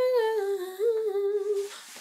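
A woman humming a sung line in a small room: one held note that steps down in pitch, with a brief lift near the middle, fading out near the end. She is humming back the melody to check its notes.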